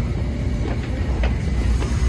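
New York City subway train running through the station, a steady heavy low rumble with faint clicks.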